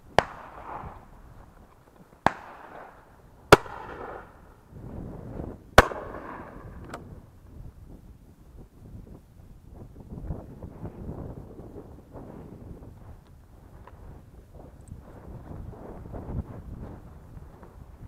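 Four sharp shotgun reports in the first six seconds, spaced one to two seconds apart, each trailing a brief echo, then a fainter crack about seven seconds in.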